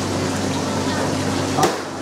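Steady background hum and hiss of running equipment at a seafood counter, with one short knock about a second and a half in.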